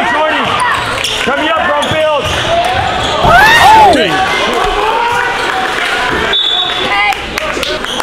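Basketball game on a hardwood gym court: many short squeaks of sneakers on the court and a bouncing ball, with the loudest squeal, rising then falling, about three and a half seconds in.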